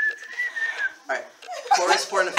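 A man whistling one held note through pursed lips for about a second. The note drifts slightly up in pitch and then falls off.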